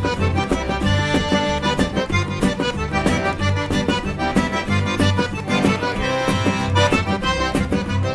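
A Cajun/Creole band playing a two-step: a Cajun button accordion carries the melody over fiddle, acoustic guitar, upright bass and drums, with a steady dance beat.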